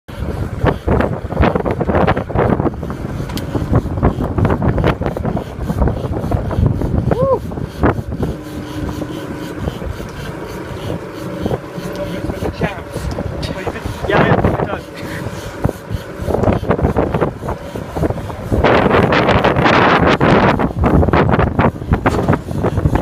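Twin Yamaha V250 outboard motors running under way with rushing wake water, much of it covered by wind buffeting the phone's microphone, with a louder gust of noise near the end. Indistinct voices come through now and then.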